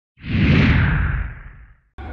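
Transition whoosh sound effect between news stories: a rush with a deep low boom that swells up quickly and fades out over about a second and a half, its hiss falling in pitch.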